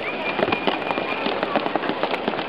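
Hands slapping, dabbing and rubbing paint onto a canvas: a rapid, irregular crackle of taps and scrapes.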